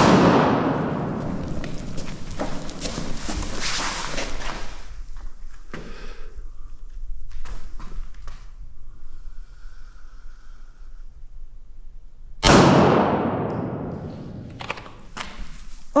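Two pistol shots in a large concrete indoor range, one at the start and another about twelve and a half seconds in, each followed by a long echo dying away over several seconds. Smaller knocks and handling sounds come between them.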